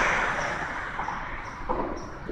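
Road traffic passing by and fading away: an even rushing noise that dies down over the two seconds.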